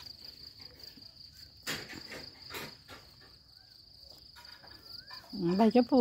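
Insects trilling: one steady, high-pitched continuous note. A couple of soft knocks come about one and a half seconds apart, around the middle.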